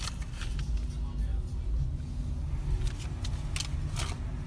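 Low, steady road and tyre rumble inside the cabin of a slowly moving electric car (Renault Z.E.), with no engine note and a few light clicks.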